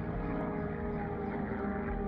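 Propeller aircraft engines droning steadily, in a dull, muffled tone.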